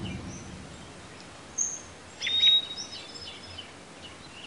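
Birds chirping faintly over a steady outdoor background hiss, with a few short, high calls around the middle, as the tail of an intro music piece fades out at the start.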